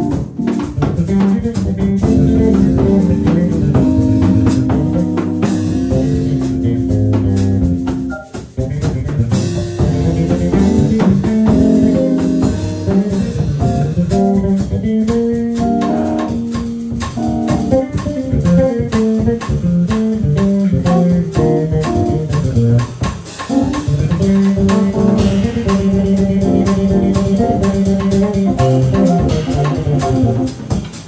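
Live instrumental jazz from a small combo: a Kawai MP11 digital stage piano, bass guitar and drum kit playing together, with a brief drop-out about eight seconds in.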